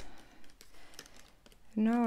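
Typing on a laptop keyboard with fingernails: a run of light, irregular key clicks. A woman's voice starts speaking near the end.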